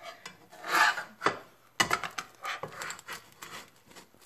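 A wooden spatula scraping against the inside of a pan as it is worked under baked bread rolls to loosen them. There are several scraping strokes, the loudest near the start, and a sharp knock a little under two seconds in.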